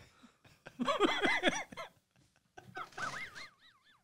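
Men laughing: a run of short rapid laughs about a second in, then a high, wavering squeal of laughter near the end.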